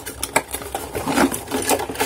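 Cardboard box flaps being opened by hand and a plug-in power supply with its cable being lifted out: a quick run of light scrapes, taps and rustles of card and plastic.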